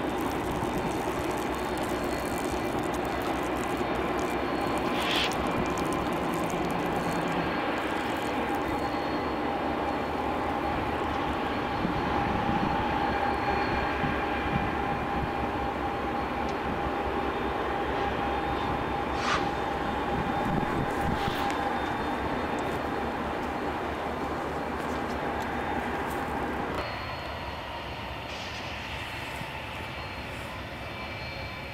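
Double-stack container freight train rolling past: a steady rumble and clatter of wheels on rail, with a thin steady whine over it and a few brief high squeaks. The sound drops off suddenly near the end.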